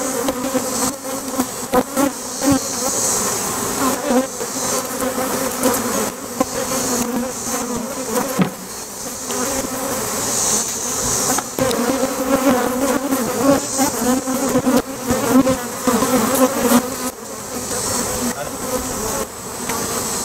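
A dense mass of honey bees buzzing in a loud, steady hum as they are released from a removal box onto a hive. The bees are defensive, which the beekeepers suspect may be a sign of partly Africanized bees. A few light knocks come from handling the hive boxes.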